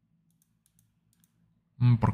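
A few faint clicks of a computer mouse as folders are opened in a file tree, followed near the end by a man's voice starting to speak.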